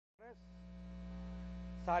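Steady electrical mains hum on the broadcast audio. It cuts in abruptly just after the start, with a clipped scrap of voice at its onset.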